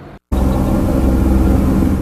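A brief dropout, then a steady low engine rumble with a noisy hiss over it.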